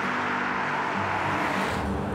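A car passing on a paved road: its tyre and engine noise swells and then falls away near the end.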